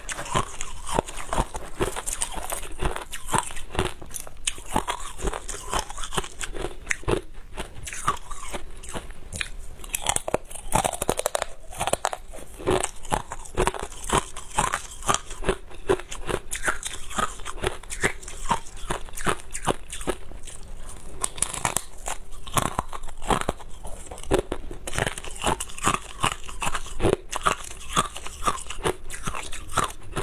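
Close-miked ice eating: thin sheets of clear ice and crushed ice bitten and chewed, cracking between the teeth in many sharp, closely spaced crunches.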